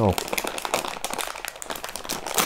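Plastic candy bag crinkling and crackling as a hand presses and moves it on a tabletop, a dense run of small sharp crackles.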